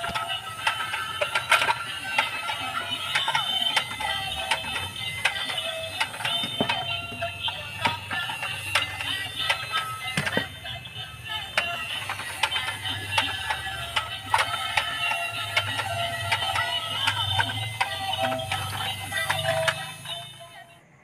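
Battery-operated dancing toy fire engine playing its built-in electronic song with synthetic singing while it runs, with frequent small clicks, fading at the very end.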